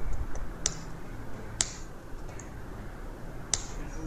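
Computer keyboard being typed on in scattered keystrokes, with three sharper clicks standing out about 0.7, 1.6 and 3.5 seconds in, over a low steady background hum.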